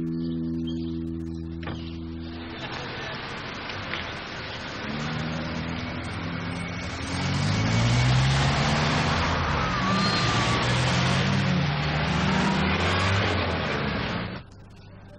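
Plucked-guitar music ends about two and a half seconds in and gives way to busy road traffic: cars and other vehicles driving past. The traffic gets louder from about seven seconds in.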